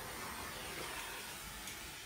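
Handheld torch flame hissing steadily as it is passed over wet acrylic pour paint to pop small air bubbles. The hiss tapers away at the end as the torch is taken off.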